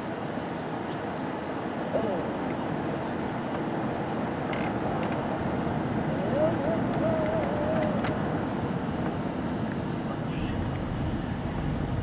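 Road and engine noise of a car being driven, heard from inside the cabin: a steady rumble and tyre hiss. A faint wavering voice-like sound comes in around the middle.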